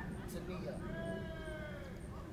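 A person's voice holding one high-pitched vowel for about a second, drooping slightly at the end, like a drawn-out "oooh".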